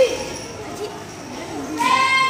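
A short loud shouted call from a child at the start, then faint children's voices. Near the end a sustained reedy chord starts up, held steady, from the band's melodicas (pianikas).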